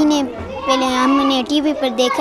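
A young girl speaking in a clear, high-pitched voice, in a language other than Swahili.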